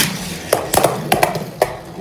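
Beyblade Burst spinning tops launched into a plastic stadium. A rip-launch whoosh comes right at the start, then a quick run of sharp clicks as the spinning tops strike each other and the stadium.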